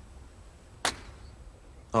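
A golf club striking a teed ball on a tee shot: one sharp, short click a little under a second in.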